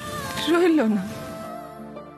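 Slow, sad background music of held notes, with a short, loud, falling vocal cry about half a second in.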